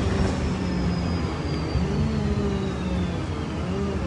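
Bus running on the road, heard from inside the passenger cabin: a steady low engine drone and rumble with a faint high whine that slowly falls in pitch.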